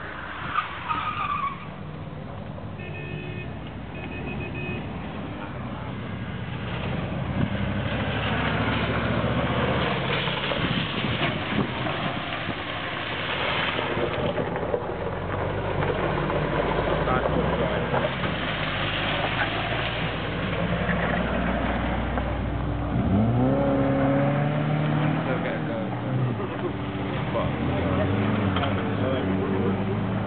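Car engine of a double-decker stunt car, a second car carried on its roof, running and revving as it is driven round a loose gravel course, the revs rising and falling with each turn and climbing quickly late on. Tyres scrabble on the loose gravel.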